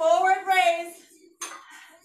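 A voice holds a long wordless call for about a second. About a second and a half in comes a sharp metallic clink, typical of dumbbells knocking together.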